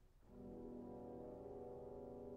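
Orchestral brass playing quietly in a slow symphonic finale: one soft, sustained chord dies away, and a new held chord enters about a third of a second in.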